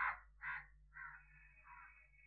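A crow cawing four times in quick succession, the first two caws loudest.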